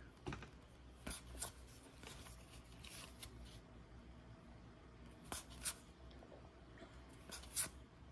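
Faint swishes and flicks of cardboard trading cards being slid one at a time from the front to the back of a handheld stack, coming in quick pairs about every two seconds.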